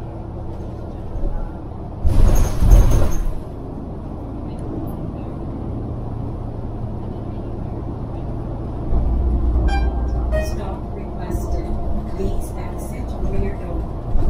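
Interior of a city transit bus on the move: steady diesel engine and road noise, with one loud hiss of compressed air from the air brakes lasting about a second, starting about two seconds in. Around nine seconds in the engine's low drone grows louder as the bus accelerates, and a few short clicks follow.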